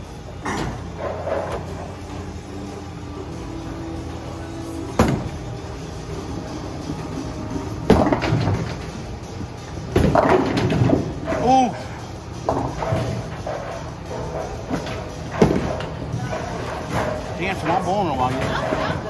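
Bowling alley din: a steady low rumble of balls rolling on the lanes, broken by about four sharp crashes of balls striking pins, over background chatter and music.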